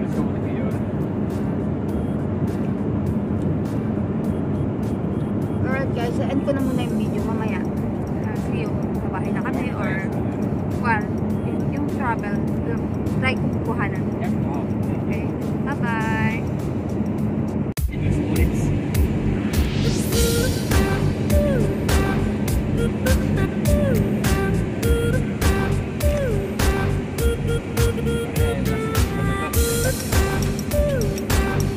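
Steady drone of road and engine noise inside a moving car's cabin, with a few short pitched sounds over it. About 18 seconds in it cuts abruptly to background music with a steady beat.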